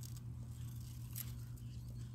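Garden shears snipping spinach leaf stems: two faint short snips about a second apart, over a steady low hum.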